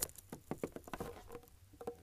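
Faint, irregular crackles of boots stepping in fresh snow.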